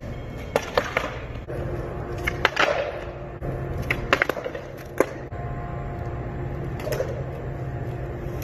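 Skateboard wheels rolling on concrete with a steady low rumble, broken by several sharp clacks of the board. The loudest clacks come about four and five seconds in, as the board pops for a trick and lands.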